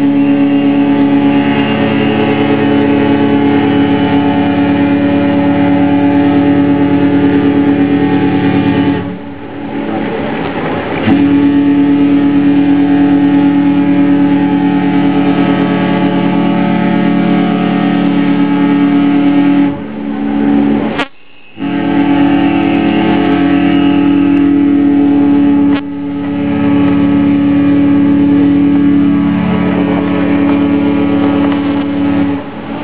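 Ships' horns sounding long, deep, steady blasts of several seconds each in a greeting exchange between passing ships, with short breaks about nine seconds in and about twenty seconds in.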